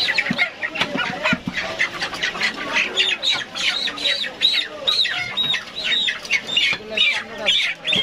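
Chickens squawking over and over, the calls coming quickly, about three a second, from about three seconds in. Scattered knocks of a cleaver chopping on a wooden block sound beneath them.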